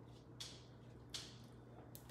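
Near silence: thick enchilada sauce being poured slowly from a can into a glass baking dish, with two faint soft sounds about half a second and a little over a second in, over a faint low room hum.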